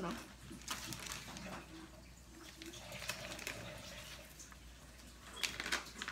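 Plastic seasoning bag crinkling as it is handled, with scattered light crackles and a cluster of sharper ones about five and a half seconds in.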